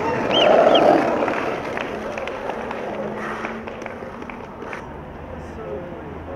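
A few people shouting and cheering, loudest in the first second, then fading into street background noise.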